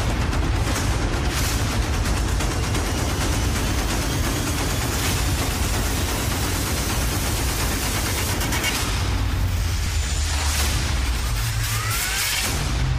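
Pre-recorded fight soundtrack played loud over the stage PA: a dense, rumbling mix of battle sound effects and music, with booms and a few sharp hits.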